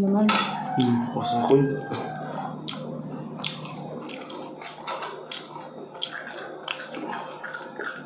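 Eating at a table: scattered clicks and taps of cutlery and dishes while bone-in beef and rice are handled, with a short hummed "mm" voice in the first two seconds and a steady low hum underneath.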